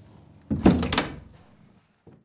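A door thudding shut: a quick cluster of knocks and thumps about half a second in, dying away over the next second.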